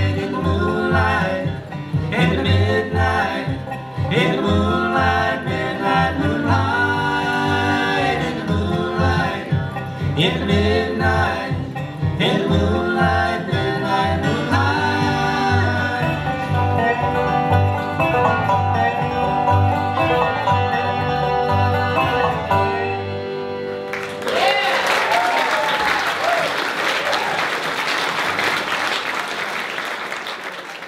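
A live bluegrass band of dobro, banjo, fiddle, acoustic guitar and upright bass plays the closing bars of a tune and ends on a held chord about 24 seconds in. An audience then applauds.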